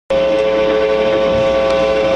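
Amplified electric guitar holding one loud, steady droning tone with many overtones.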